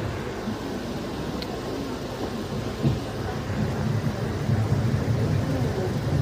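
Steady low rumble with faint, indistinct voices murmuring underneath, the talk of a gathered audience in a large tent.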